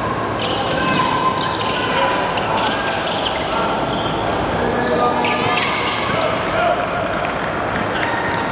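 Live court sound of a basketball game on a hardwood gym floor: the ball bouncing as players dribble, short sharp shoe-and-ball impacts, and players' voices calling out on court.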